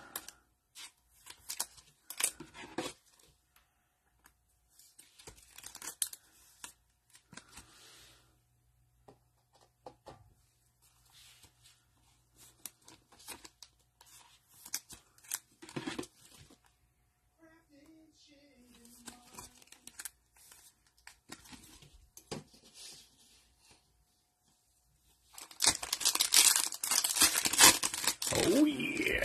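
Trading cards handled in gloved hands, with soft scattered clicks and rustles. Near the end, a foil card pack is torn open with a loud ripping and crinkling.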